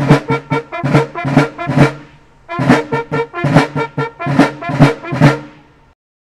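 Military brass fanfare at a ceremony: short, detached brass notes in two phrases with a brief pause between them, ending near the end.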